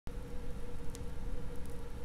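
Low, steady hum with a faint even hiss from a turntable playing through a tube amplifier, with no music or voice yet.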